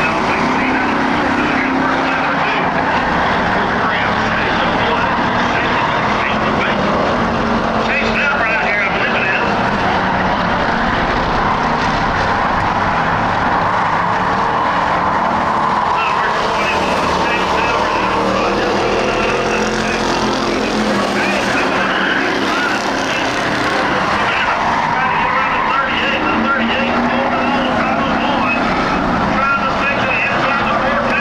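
A pack of Ford Crown Victoria V8 race cars running together at speed on a dirt oval. It is a loud, continuous, mixed engine noise, with individual engine notes rising and falling as the cars pass.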